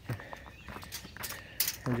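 Footsteps on loose, freshly dug soil: a few soft, irregular steps with one sharper crunch near the end, just before a man starts talking.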